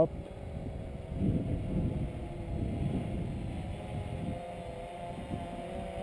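UP Air One quadcopter hovering aloft: a steady multi-tone hum from its four propellers, a little stronger near the end, over a low rushing noise that is loudest in the first few seconds.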